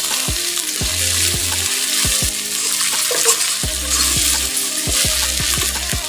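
Sliced onions sizzling in hot oil in a steel wok, stirred and scraped with a metal spatula. Background music with a deep bass beat plays over it.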